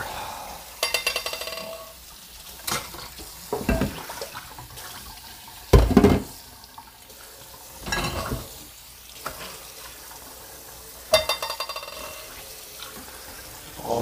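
Irregular knocks, clatters and scrapes of things being handled while cleaning up, with a short rattle about a second in and again near the end, and the loudest thud about six seconds in. A steady faint hiss runs underneath.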